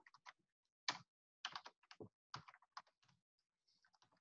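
Faint typing on a computer keyboard: about a dozen separate, irregularly spaced keystrokes.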